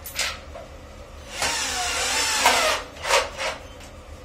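Cordless drill running in one burst of about a second and a half under load at a screw hole of a plastic toilet outlet base, its motor pitch dipping and then rising. Short handling knocks come just before and just after it.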